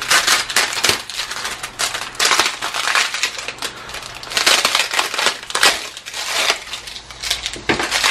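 Thin foam packing wrap crinkling and rustling in irregular bursts as it is pulled open by hand and slit with a utility knife.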